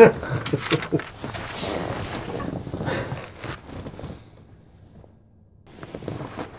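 Rustling, shuffling and knocking as a man gets up off a leather couch and moves about, with a short vocal outburst right at the start. It dies away after about four seconds.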